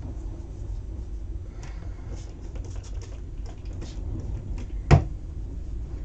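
Faint rubbing and light tapping of fingers spreading water over damp black cardstock on a craft mat, over a steady low hum. One sharp tap about five seconds in.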